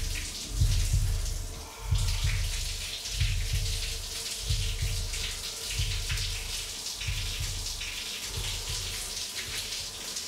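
Shower running: water spraying steadily onto a person and the tiled stall, with a low throb underneath that swells and fades every second or so.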